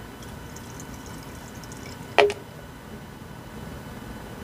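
Hydrogen peroxide poured from a plastic bottle through a funnel into a pressure sprayer's tank of water, a faint trickle with one short, sharp sound about two seconds in.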